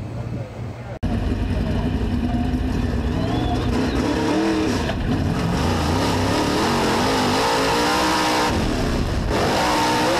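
A dirt-track race car's engine heard from inside the cockpit, its pitch climbing and falling as it revs and lifts through the laps. It starts suddenly about a second in.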